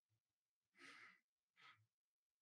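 Near silence, with a faint exhaled breath about a second in and a smaller one near the end.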